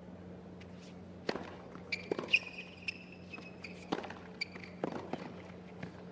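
Tennis rally on a hard court: several sharp knocks of racket strikes and ball bounces, with shoes squeaking on the court in the middle, over a low steady hum.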